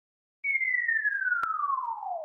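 A falling-whistle sound effect for a logo animation: a single pure tone that starts about half a second in and slides steadily down in pitch, with one brief click partway through.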